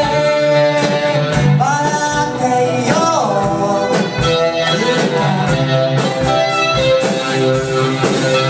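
A live band playing a song with singing: electric guitars, bass, drum kit, keyboard and saxophone.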